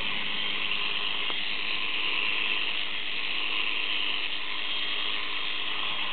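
Sheep-shearing handpiece running steadily as it cuts through a ram's fleece, a constant buzzing clatter of the cutter working back and forth.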